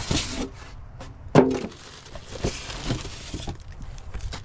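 Packaging being handled while a small vacuum pump is unboxed: the foam insert and cardboard box are knocked and scraped, with one sharp knock about one and a half seconds in. Then comes a stretch of crinkly rustling as the pump is lifted out in its plastic bag.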